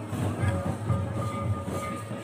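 Santali folk dance music: drums beating a steady rhythm, with a held melody note sounding over them at intervals.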